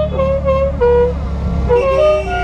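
Classic Fiat 500's small engine running steadily under a tune of short, stepped high notes. The tune pauses briefly and picks up again near the end.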